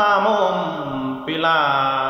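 A man singing Tai khắp, a slow verse of long held, wavering notes in a low voice; a new phrase begins just past the middle.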